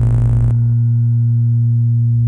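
Dark ambient synthesizer music: a dense layered texture cuts off about half a second in, leaving a loud, steady low drone with a few faint higher tones held above it.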